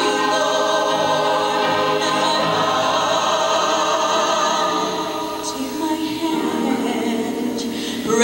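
Mixed choir of men and women singing long held chords, with a female lead voice at a microphone out front. The singing eases off slightly in the last few seconds.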